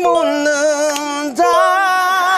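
A man singing a slow, sweet-sounding Korean ballad line, holding a long note that breaks off about one and a half seconds in before the next note begins.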